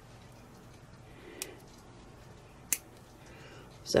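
Nail clippers snipping through fingernails: two short, sharp clicks, the second the louder, as the nails are clipped down.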